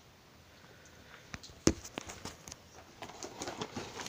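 Handling noise on a table: a few light clicks and knocks, one sharper knock a little under two seconds in, then soft rustling and shuffling near the end as the calendar box and phone are moved about.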